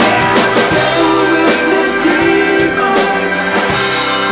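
Live rock band playing: electric guitars and keyboard over a drum kit, with regular drum and cymbal hits.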